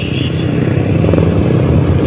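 Honda Beat Fi scooter's small single-cylinder engine running at a steady idle.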